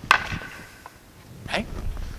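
Wooden practice swords (bokken) striking together once: a single sharp wooden clack with a brief ring, as a cut meets the defender's sword.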